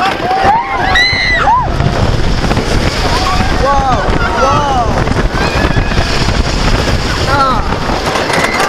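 Riders yelling and screaming on a wooden roller coaster's drop and the climb after it. The loudest rising-and-falling yells come about a second in, and more follow around the middle and near the end. Throughout, wind rushes over the microphone and the train rumbles on the track.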